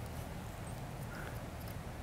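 Quiet room tone with a faint steady low hum; no distinct event.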